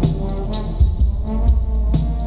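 Slowed-down, reverb-heavy hip-hop instrumental beat with deep sustained bass, regular drum hits and held melodic tones.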